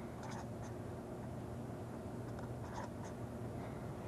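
Marker pen writing on a paper pad: a few faint, short strokes, over a steady low hum.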